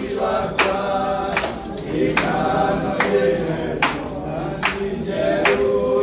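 A group of voices singing a hymn together, with a sharp regular beat about every 0.8 seconds.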